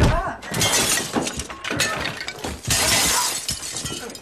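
Glass breaking during a struggle. A heavy impact comes right at the start, then two spells of shattering and clattering glass, one about half a second in and a louder one around three seconds in.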